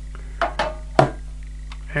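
Plastic Blu-ray case being handled: two short clacks, about half a second and a second in, the second the sharper and louder.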